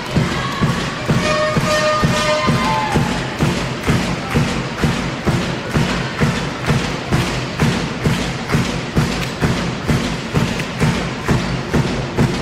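A drum beaten in a steady, even rhythm, about two and a half beats a second, with a few brief pitched sounds in the first seconds.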